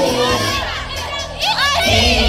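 Crowd of girls shouting and cheering together over dance music. The music's beat drops out for about a second, then the girls break into loud, high shouts near the end as the beat comes back.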